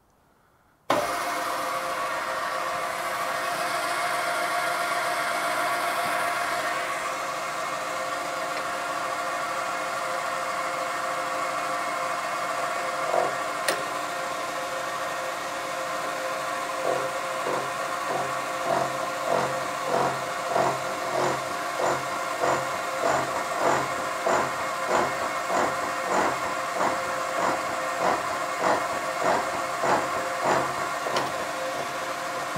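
Milling machine switched on about a second in and running steadily. From about halfway a 28-tooth milling cutter is cutting a ring, with a regular pulse of about one and a half beats a second, which the machinist puts down to the cutter probably being out of round.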